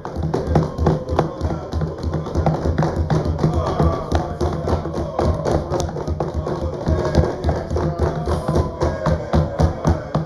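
Parliament members banging on their wooden desks in a long run of rapid thumps, with voices calling out over it: desk-thumping in approval of the point just made.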